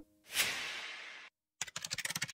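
Logo-animation sound effects: a hissing whoosh about a quarter second in that fades away, then near the end a quick run of keyboard-typing clicks.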